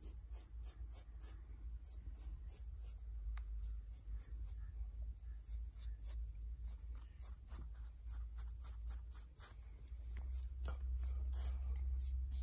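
Straight razor with a replaceable blade scraping short wet hair off a scalp in quick short strokes, a few a second, sparser in the middle and packed together again near the end. A steady low rumble runs underneath and grows louder in the last couple of seconds.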